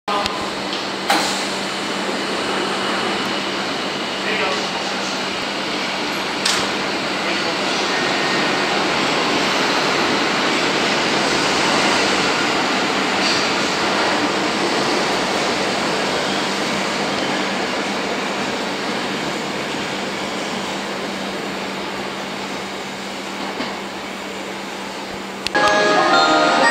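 Underground station platform ambience beside a standing Ginza Line 01 series subway train: a steady low hum under an even wash of noise, with sharp clicks about one and six seconds in. Right at the end a chiming departure melody starts.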